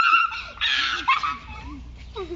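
A woman gagging and whining in disgust at a mouthful of salt water, with a harsh, breathy retch from about half a second to a second in.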